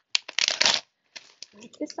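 Plastic packaging crinkling loudly as an instant-noodle packet is handled and set down, followed by quieter rustling while the shopping is rummaged through.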